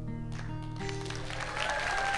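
Acoustic guitar's final chord ringing out at the end of a song, with a last strum about half a second in. Audience applause starts right after and builds toward the end.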